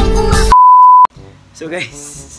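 Upbeat background music cuts off about half a second in and gives way to a loud, steady electronic bleep lasting about half a second, the kind of tone edited in to censor a word. Faint talking follows.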